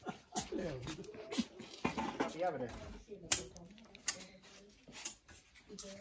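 Faint voices talking in the background, with a few sharp clicks and knocks, the loudest about halfway through.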